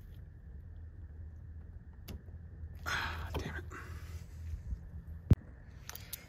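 A wrench working a brake line flare nut on the master cylinder over a faint steady low hum. About three seconds in there is a brief rasping scrape, and a little after five seconds a single sharp metal click, as the tool slips without the nut coming loose.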